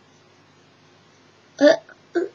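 Faint room hiss, then about a second and a half in a woman's short "uh".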